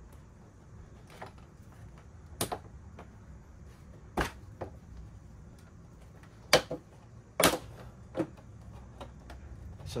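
Plastic side fairing panel of a Yamaha R7 being pulled loose by hand, giving a series of sharp plastic clicks and snaps as its tabs and clips come free, the loudest two in the second half.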